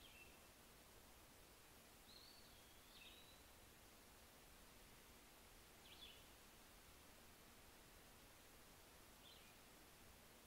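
Near silence: faint room tone with four soft high chirps, one of them a longer whistle that slides down and back up.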